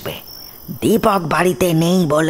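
Crickets chirping steadily as a background sound effect, heard on their own for nearly a second before a voice resumes over them.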